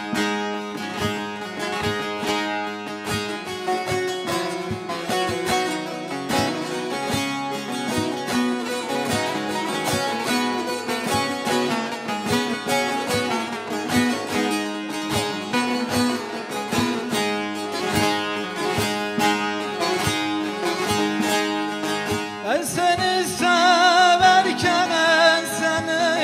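Two bağlamas (Turkish long-necked saz) playing a rapidly picked instrumental introduction to a Turkish folk song (türkü). Near the end a man's voice comes in singing, with a wavering vibrato.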